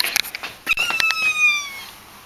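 A window being opened: a few clicks of the handle, then one long, high squeak of the hinge that falls slowly in pitch.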